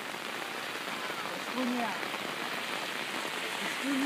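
Steady rain pattering on an open umbrella held just by the microphone.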